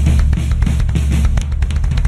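Rock drum kit played live, kick, snare and cymbals, along with a backing track's steady bass line; a quick run of strokes comes in the second half.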